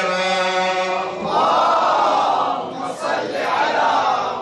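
A man's voice holds a long sung note. About a second in, a crowd of men and boys joins in, chanting loudly together in unison in response to the recitation.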